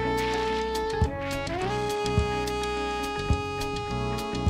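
Live jazz-fusion band playing. A lead melody holds long notes and slides up into a new held note about a second and a half in, over bass and a drum beat landing about once a second.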